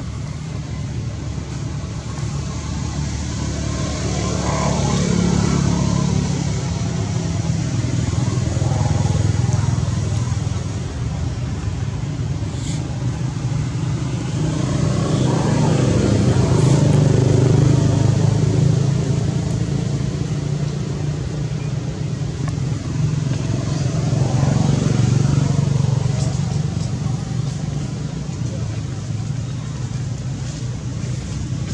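Motor traffic passing on a nearby road, engines and tyres swelling and fading as about four vehicles go by, over a steady low hum.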